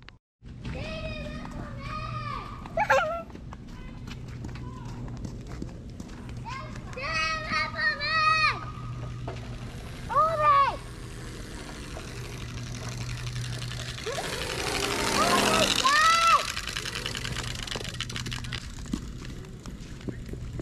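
Children calling out in high, sing-song voices in several short bursts, over a steady low hum.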